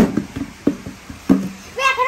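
A large toy die thrown onto a tiled floor: one sharp knock as it lands, then a few lighter knocks as it tumbles to a stop over about a second and a half. A child's voice starts near the end.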